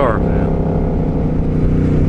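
Suzuki C50T Boulevard's V-twin engine running steadily while the motorcycle cruises along the road at an even speed.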